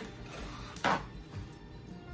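Soft background music, with one short, loud rip of paper just under a second in as a paper towel sheet is torn from the roll.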